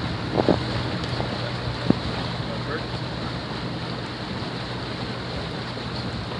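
Wind buffeting the microphone aboard a tour boat under way, over a steady low engine hum and the wash of water past the hull. There is a short knock about two seconds in.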